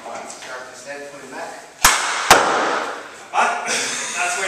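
A loaded barbell power clean: two sharp knocks about half a second apart, a little under two seconds in, as the bar is pulled from the hips and caught at the shoulders, with a short rattle after them.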